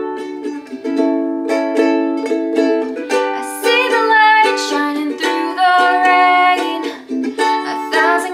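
Ukulele strummed in a steady pattern of chords, with a woman's voice starting to sing the melody over it about three seconds in.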